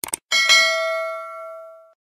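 Two quick clicks, then a single bell ding that rings out for about a second and a half and cuts off just before the end. It is a stock notification-bell sound effect set to a cursor clicking a bell icon.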